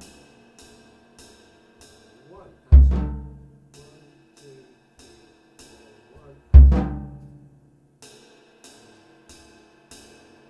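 Jazz drum kit being played in a sparse phrasing exercise: soft, evenly spaced cymbal-like strokes almost twice a second, broken by two loud accented drum hits with a deep bass drum thud, about three seconds in and again near seven seconds, each ringing out for about a second.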